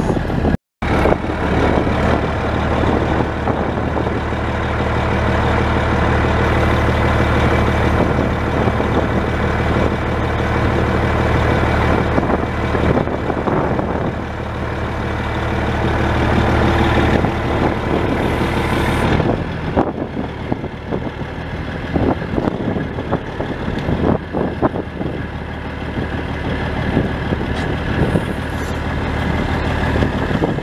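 Truck engine running steadily, with a brief dropout just under a second in; about nineteen seconds in the low engine sound weakens and scattered knocks follow.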